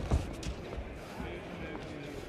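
A single punch thumping onto a boxer's gloves just after the start, over the steady murmur of a large arena crowd.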